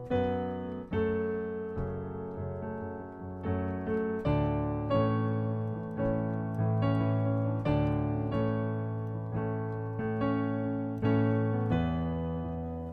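Piano sound from a digital keyboard, played with both hands: chords struck again in a steady rhythm over held bass notes that change a few times.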